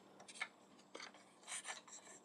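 A few faint clicks and rubs of hard plastic as a waist armor piece from an upgrade kit is worked into a slot on a Transformers Predaking figure.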